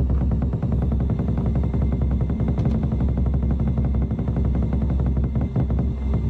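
Rapid, continuous drumming on large drums, a dense roll of beats over a steady low rumble, with faint sustained music.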